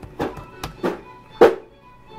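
A few computer keyboard keystrokes as a short comment is typed and sent, the last keypress the loudest, over faint background music.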